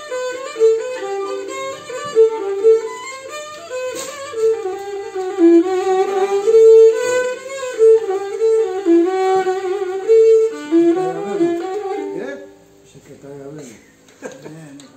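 Cretan lyra bowed solo, playing a quick, stepping folk melody of short ornamented notes, which stops near the end.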